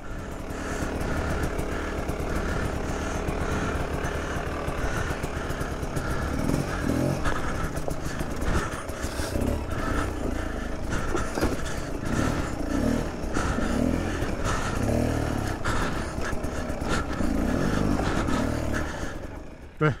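Beta 300 RR two-stroke dirt bike engine running at low revs, the throttle opening and closing unevenly as the bike crawls over rocks, with occasional knocks from the bike. The sound cuts off near the end.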